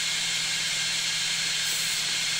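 An Ortur Laser Master 3 laser engraver at work on a stone: a steady fan hiss with a faint low hum underneath, even in level throughout.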